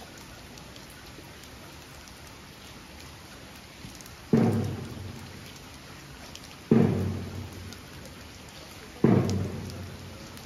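A large taiko drum struck three times, about two and a half seconds apart, each deep boom ringing out and fading over a second or so, the signal that the ceremony is beginning. Steady rain throughout.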